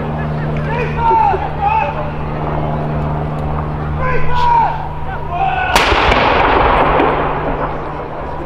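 A single blank round fired from a 105 mm L118 light gun as one shot of a 21-gun salute: a sharp, loud report near the end, followed by a rumbling echo that dies away over about a second and a half.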